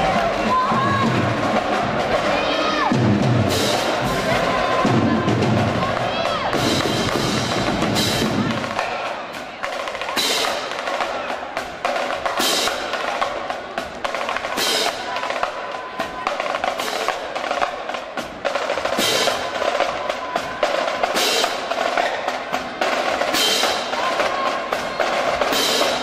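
Marching band drumline playing a percussion cadence. Heavy low drum strikes come in the first several seconds, then sharp, evenly spaced strikes about once a second, over the chatter of a crowd in a gymnasium.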